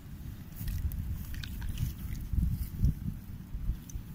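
Wind buffeting the microphone as a low, uneven rumble, with small splashes and drips of water as hands rinse soil from young cereal plants' roots in a bucket.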